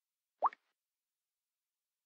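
A single short water-drop 'plop' from a Samsung Galaxy S4 touch sound, its pitch sweeping quickly upward, as the thumbnail is tapped to open the photo viewer.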